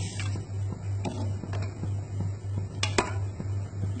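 Stainless-steel ladle tapping and clinking against a metal pot and bowl while foam is skimmed off a simmering soup, with a few light taps and then two sharp clinks close together about three seconds in. A steady low pulsing hum runs underneath.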